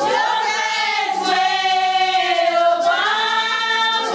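A group of voices, women's voices to the fore, singing a Vodou ceremonial song together in long held notes.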